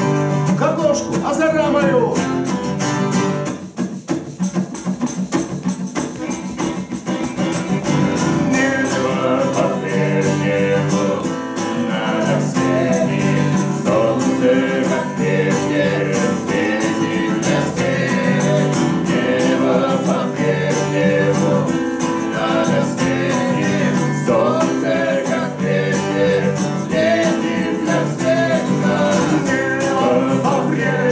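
A man singing a song to his own strummed acoustic guitar, performed live. A few seconds in, the voice drops out briefly and the guitar carries on alone before the singing returns.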